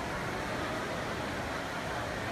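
Steady ambient noise of a large indoor atrium lobby: an even hiss of room tone and ventilation, with no distinct events.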